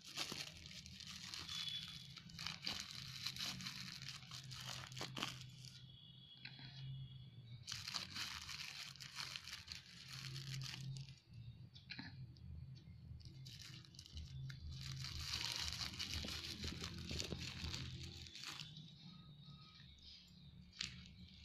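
Rustling, crinkling and scraping as spoonfuls of dry powder (multani mitti clay, then ubtan powder) are scooped and tipped into a plastic tub. The noise comes in several stretches of a few seconds each.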